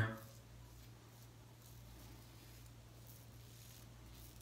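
Faint scraping of a brass Karve safety razor with a Feather double-edge blade drawn over lathered stubble, a few light strokes, over a steady low hum.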